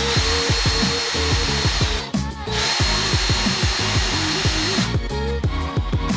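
Craftsman cordless drill running and boring into a wooden board in two stretches, the first about two seconds long, then a brief stop, then about two and a half seconds more. Background music plays under it.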